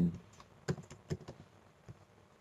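Typing on a computer keyboard: a string of short, sharp key clicks as a word is typed.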